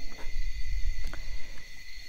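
Crickets chirring in a steady chorus, over a low rumble, with a couple of faint clicks.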